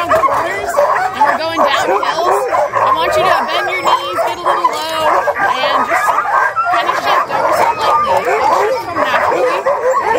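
A yard full of Alaskan husky sled dogs yipping, whining and barking together in a continuous overlapping chorus.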